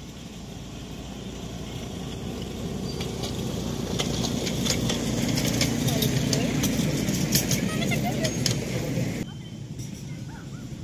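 Miniature park railway train passing close: a low rumble that builds as the locomotive and loaded passenger cars approach, with rapid clicking of the wheels over the rail joints, then drops away suddenly just before the end as the train moves off.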